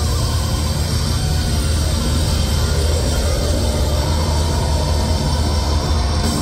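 Live heavy metal band playing loud, heard from within the crowd: guitars, bass and drums blur into a dense, steady wall of sound with a heavy low end.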